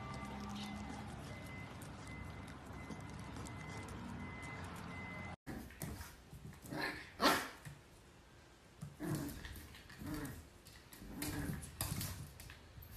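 French bulldog puppy barking and yipping at its own reflection in a mirror: several short barks from about six seconds in, the loudest a second later. Before that there is only a steady low background hum.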